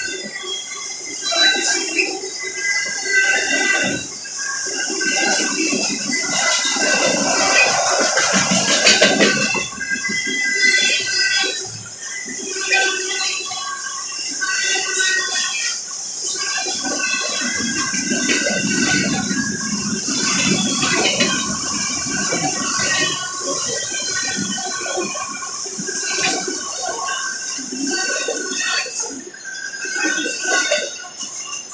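Freight train cars rolling past a grade crossing: a steady rumble and clatter of wheels on rail, with high-pitched tones that come and go over it.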